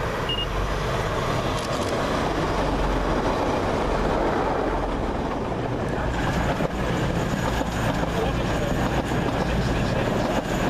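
Diesel multiple-unit passenger trains (a TransPennine Express Class 185 and a CrossCountry Voyager) passing close by: a steady rumble of engines and wheels on rails that grows louder about six seconds in, with a run of faint clicks in the second half.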